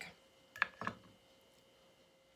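A small ceramic bowl set down on a wooden counter: two light knocks about a quarter second apart, over a faint steady hum.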